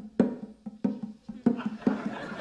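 Bongo drums played by hand: an uneven run of sharp strikes, about four a second, each with a short low ring.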